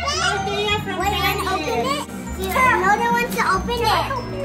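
Children's high voices and chatter over background music with a steady, stepping bass line.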